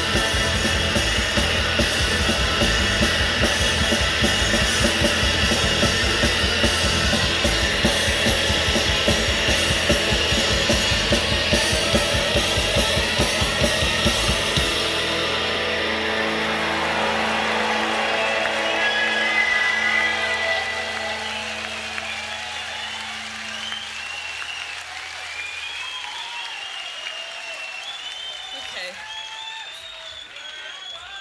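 Live shoegaze rock band playing full out, with drums, bass and distorted guitars. About halfway through the drums and bass stop. Sustained guitar chords ring on and fade out, and voices come in over the dying tail near the end.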